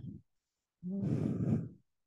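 A person sighs into the microphone, one breathy exhale lasting about a second.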